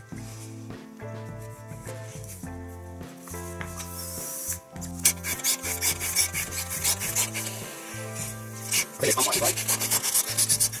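A hand balloon pump inflating a latex modelling balloon, its strokes giving a rasping, rubbing sound that grows louder about halfway through. Background music with steady held notes plays under it.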